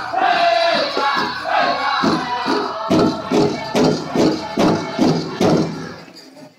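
Powwow drum group singing a high-pitched song over a big drum. In the second half the drum strokes come hard and evenly, a little over two a second, and the song ends just before the close.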